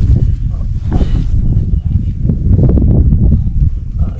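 Wind buffeting the microphone in a loud, uneven rumble, with rustling and handling noise as a caught trout is unhooked on the grass.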